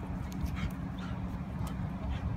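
A dog whimpering, a few short high whines and yips, over a steady low background rumble.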